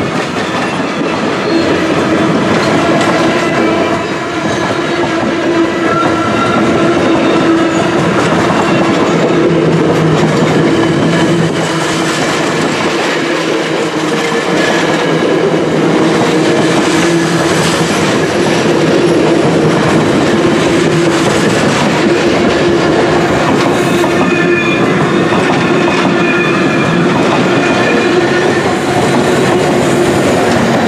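Rocky Mountaineer passenger coaches rolling past at close range, loud and steady, their wheels clicking over rail joints.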